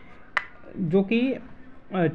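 Speech only: a voice saying a few words of Hindi narration, with a single short click about a third of a second in, before the words.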